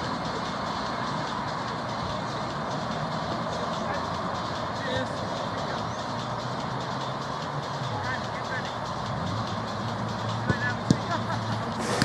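Outdoor ambience of a small-sided football game: a steady background rush with distant players' shouts, and a couple of sharp knocks near the end as the ball is kicked.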